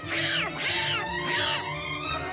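Donald Duck's raspy, panicked squawking: three rising-and-falling cries over orchestral cartoon music.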